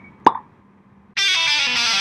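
Editing sound effects over a channel logo ident: a single short pop about a quarter second in, then a music jingle that starts abruptly a little past a second in.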